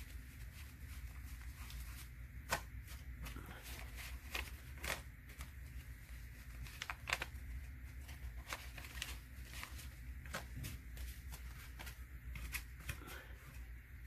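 US paper banknotes being flicked through and sorted by hand: a faint, irregular stream of crisp paper flicks and rustles as bills are peeled off the stack and laid down.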